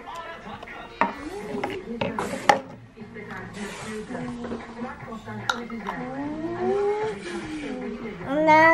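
Toy food pieces and a toy cup being handled and set down on a tabletop, giving several sharp clicks and knocks, the loudest about two and a half seconds in, with voices in the background.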